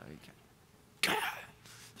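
Near-quiet room tone for about a second, then a man's short, breathy vocal burst that cuts in suddenly and fades within half a second.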